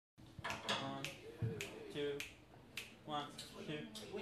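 Finger snaps on a steady beat, a little under two a second, with a voice over them: the tempo being counted off before a jazz tune starts.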